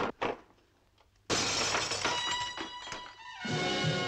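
Two quick knocks at the wall mirror, then its glass shatters with a loud crash about a second in, pieces clattering after it. Dramatic orchestral music comes in under the crash and swells with brass near the end.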